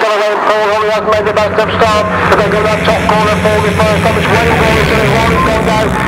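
A pack of 350cc solo grasstrack motorcycles racing away from the start at full throttle, several engine notes wavering over one another.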